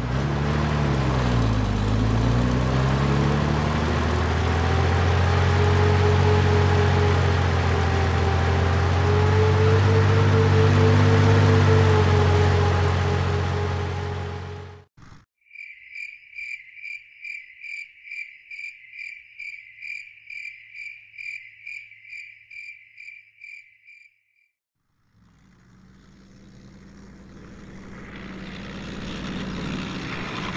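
A heavy engine runs loud and steady, a deep drone with a higher whine that wavers in pitch, and it cuts off suddenly about halfway through. A cricket then chirps about three times a second for some eight seconds. After a short near-silence, a low rumble builds, louder toward the end.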